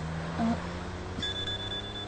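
Mobile phone ringing: a high, steady electronic tone that starts again about a second in and holds for about a second, over a low held drone.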